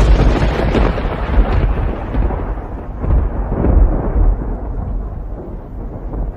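A loud thunderclap that breaks suddenly and rolls on as a deep rumble, its higher tones dying away over the following seconds.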